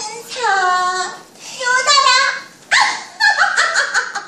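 A high-pitched human voice making wordless calls in several bursts, its pitch sweeping up and down.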